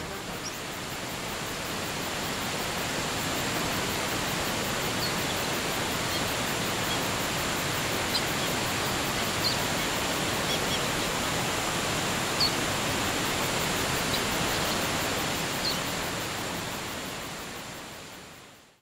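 Steady rushing of a waterfall, with a few short, high bird chirps scattered through it. It swells up at the start and fades out near the end.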